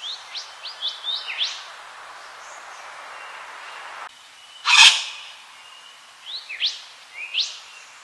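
Wattlebird calling: a quick run of short, sharp upward-sweeping notes, a single loud harsh note about five seconds in, then a few more rising notes near the end, over a steady background hiss.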